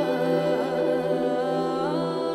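Background music: a wordless humming voice that wavers and glides over sustained, steady notes.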